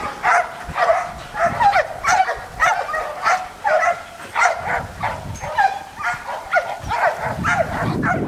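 An Australian Shepherd barking over and over, about two short barks a second.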